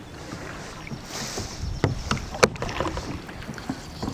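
Scattered sharp clicks and knocks from handling a spinning rod and reel in a kayak while fighting a hooked fish, over a steady hiss of wind on the microphone.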